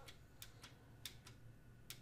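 Faint, irregular taps of computer keys, about six in two seconds, over a faint steady low hum.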